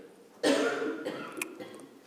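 A man coughing once close to the microphone: a sudden hoarse burst about half a second in that trails off over about a second.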